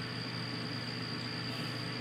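Steady background hum and hiss with a faint, constant high-pitched whine: electrical noise and room tone of the recording setup, with nothing else sounding.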